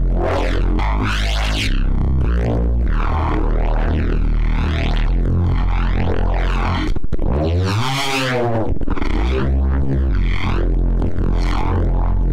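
Neuro bass synth patch built in Bitwig's Poly Grid playing: a heavy, steady low bass whose upper tones sweep up and down in arcs about once a second. There is a short break near seven seconds, followed by a sweep that rises and falls.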